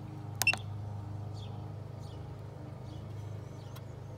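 A short electronic beep, about half a second in, from the KONNWEI KW208 battery tester as its Exit button is pressed, over a steady low hum.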